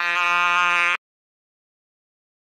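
A singing voice holding one note on the word "aquí", pitch-corrected in Melodyne so that the note is held perfectly steady with a robotic, autotuned quality. It cuts off abruptly about a second in.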